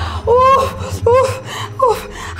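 A woman crying out in pain from a hand scalded by hot tea: three short, high-pitched wailing cries, the first the longest.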